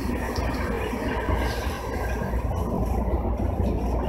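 Steady low rumble and hum inside the front of a JR commuter electric train, with no clear events standing out.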